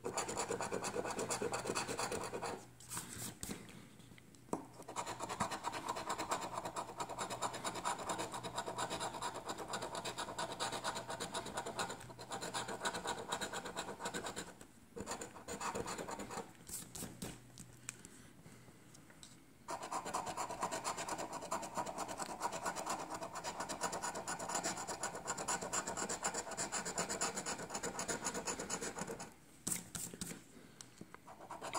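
Metal scratcher coin scraping the coating off a lottery scratch ticket: runs of quick rasping strokes with several short pauses between them.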